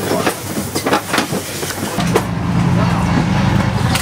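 Knocks and clatter of work with voices in the background, then about halfway through a steady low motor drone sets in and stops at the end.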